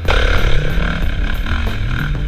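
Dirt bike engine working under load as it climbs a steep dirt hill, cutting in loudly at the start, with the low notes of background music underneath.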